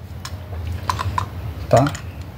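Light clicks and taps of metal carburetor parts knocking together as the freshly unbolted top cover is lifted away from the carburetor body, about four clicks in the first second or so.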